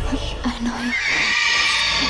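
A high pitched cry that rises about a second in and then holds, over a low rumble, after a few short low vocal sounds.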